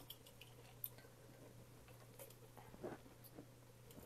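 Near silence: a few faint clicks of kitchen tongs and soft squishes of roasted tomato being lifted off a sheet pan and dropped into a pot of broth, over a low steady hum.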